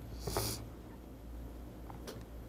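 A short breath drawn through the nose, about a quarter of a second in, then a quiet pause with a faint steady low hum.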